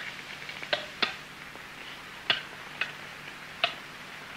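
Sharp, irregularly spaced clicks, about six in four seconds, over a faint steady hum.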